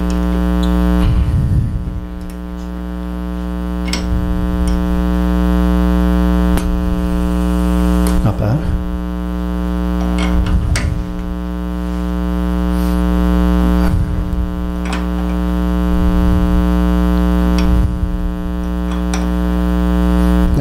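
Steady electrical mains hum, loud and unchanging, with scattered light knocks and clicks as a wooden blank is handled and seated in a metal lathe chuck.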